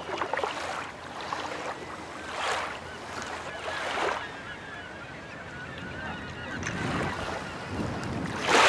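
Small waves washing in over a sandy, stony shoreline, in swells a second or two apart, with birds calling repeatedly in the background.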